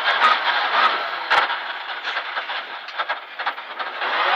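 Rally car running on a gravel stage, heard from inside the cabin: steady engine and road noise that fades as the car slows for a tight turn, with a single sharp knock about a second and a half in.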